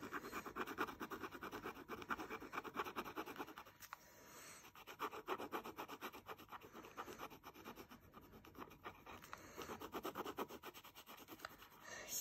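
Pen tip scribbling back and forth on paper, colouring in an area with quick scratchy strokes, several a second, with a short break about four seconds in.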